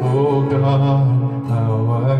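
A man sings a long, wavering sung line over a strummed acoustic guitar.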